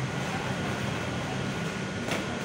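Steady indoor background noise with a low hum, typical of a room's air conditioning and general din; no distinct event stands out.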